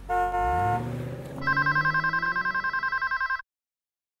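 Street traffic with a brief car horn and an engine rising in pitch. About a second and a half in, a desk telephone starts ringing with a fast warbling electronic trill, which cuts off abruptly near the end.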